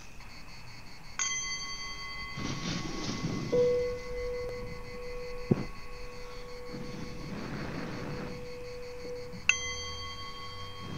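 Ambient music: a bell-like chime is struck about a second in and again near the end, each ringing out slowly. Under it a steady held tone comes in a few seconds in, with soft swells of noise and one sharp click midway.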